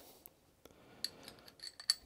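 Near silence, then from about halfway through a few light metallic clicks and clinks of a spark plug socket and hand tools being handled, with one sharper click near the end.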